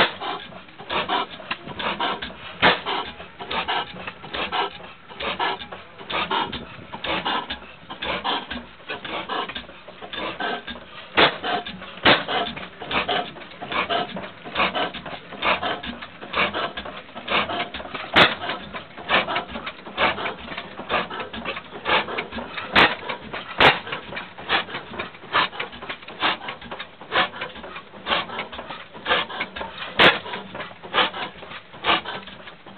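35 hp Superior hit-and-miss gas engine running: a steady, rhythmic clatter of several strokes a second, with a few sharper, louder hits scattered through.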